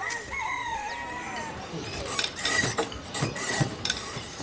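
A rooster crowing: one long call lasting nearly two seconds that dips in pitch at the end, followed by a run of short scratchy sounds.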